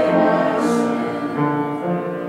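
Congregation singing a hymn in unison with keyboard accompaniment, holding sustained notes that change step by step.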